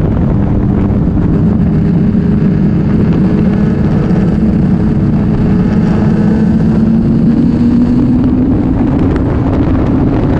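BMW K1200R Sport's inline-four engine running while riding, with wind rushing over the microphone; the engine note rises between about six and nine seconds in as the bike speeds up.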